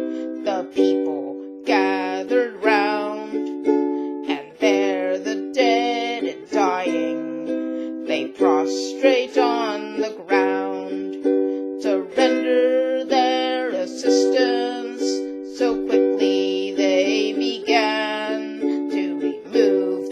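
A woman singing a folk ballad to her own strummed ukulele chords, a steady strum under a wavering melody line.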